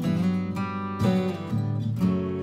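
Acoustic guitar strummed in a song, a chord struck about once a second and left ringing.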